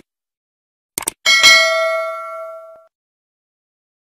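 Two quick clicks, then a bright bell ding that rings out and fades over about a second and a half: the sound effect of a YouTube subscribe-button and notification-bell animation.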